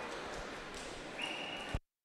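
Faint crowd murmur in an indoor pool hall. A little over a second in, a referee's whistle sounds one short, steady high note lasting about half a second, then a click, and the sound cuts off abruptly.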